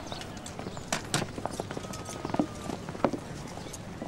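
Horse hooves clopping irregularly and footsteps in an open yard, a few sharp knocks scattered through.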